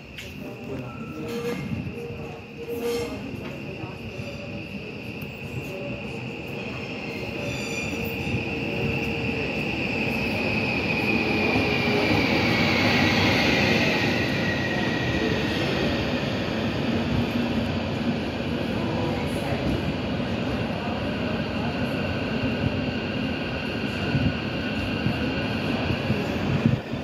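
Končar class 6112 electric multiple unit pulling into the platform and slowing past, growing louder as it comes alongside. A high whine falls slowly in pitch as the train loses speed.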